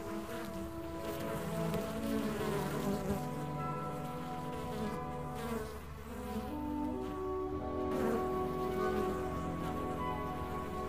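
Honeybees buzzing steadily, with orchestral waltz music playing underneath.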